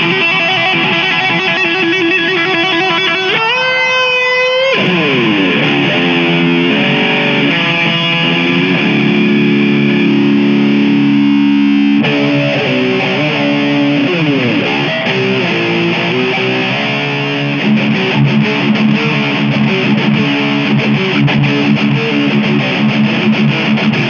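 Les Paul Custom Pro electric guitar played lead: held notes with vibrato, a long slide up in pitch about four seconds in, then melodic runs. The playing turns choppier and more rhythmic in the last third.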